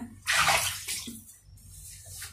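Short rush of running water, with a second, briefer gush near the end.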